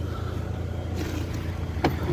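A vehicle engine idling with a steady low hum, and a sharp knock near the end as luggage is loaded into the back of the SUV.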